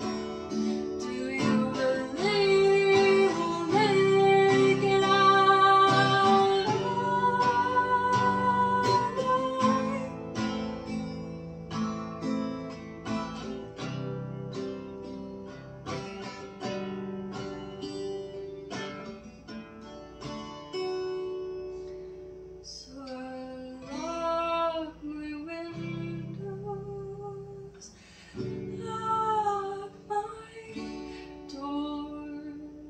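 Acoustic guitar strummed steadily with a woman singing over it; her voice holds long notes in the first third, drops out for a stretch of guitar alone in the middle, and comes back in twice near the end.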